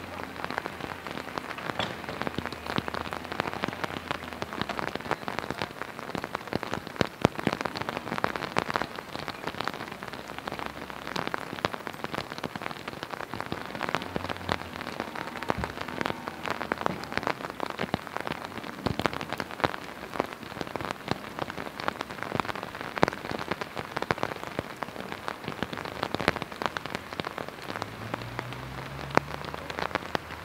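Steady rain falling, a continuous hiss thick with sharp ticks of individual drops landing.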